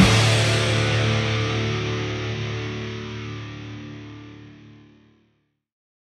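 Heavy metal song ending on a distorted electric guitar chord that rings out and fades, dying away to silence about five seconds in.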